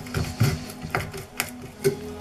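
Half-round gouge cutting into the wood of a violin's pegbox, a series of short scraping cuts roughly every half second, over a steady low hum.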